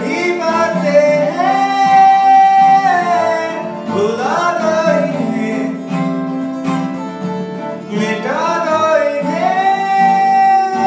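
A man singing a slow vocal melody to an acoustic guitar accompaniment, with long held notes and upward slides between phrases.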